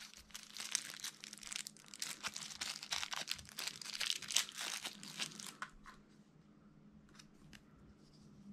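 Thin plastic packaging bag crinkling and rustling as hands pull it open to free a small charger. The crinkling stops about five and a half seconds in, leaving a few scattered light clicks.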